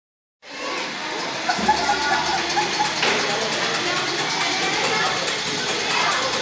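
Many children's voices chattering and calling over one another, a steady babble with no single voice standing out.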